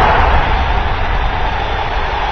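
Sound effect of an animated logo outro: the long noisy tail of a boom, a heavy rumble that slowly fades.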